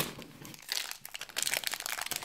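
Small clear plastic bag crinkling as it is handled, in two runs of quick crackles, one about halfway through and one near the end.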